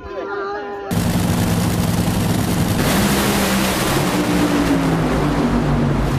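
A nitro Funny Car's supercharged nitromethane Hemi V8 running at full throttle down the drag strip: a loud, harsh roar that cuts in suddenly about a second in and holds steady, its pitch easing slightly near the end.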